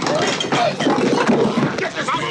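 Several people shouting over one another in overlapping, agitated voices as they struggle to hold a convulsing man down.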